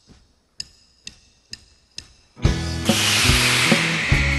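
A count-in of sharp, ringing clicks, two slow then four quick. About two and a half seconds in, a full band comes in on a crash cymbal with drums and bass as the song starts.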